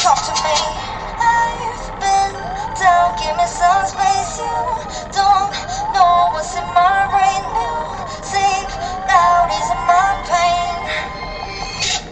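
A young woman singing a pop song over a backing track with a beat, her voice sliding through quick runs between notes.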